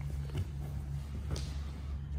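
Two people shifting their bodies on a foam grappling mat, with a couple of faint, brief scuffs, over a steady low hum.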